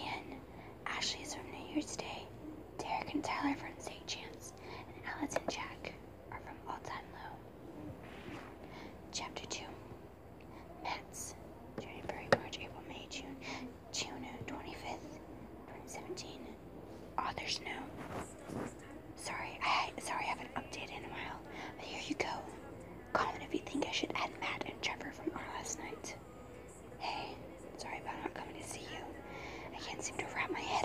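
A person whispering in runs of words broken by short pauses, with one sharp click about twelve seconds in.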